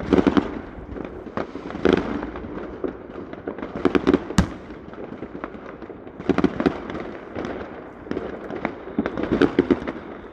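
New Year's fireworks going off all over a town: a continual mix of bangs and crackling, with denser clusters of cracks every couple of seconds and one sharp bang a little after four seconds.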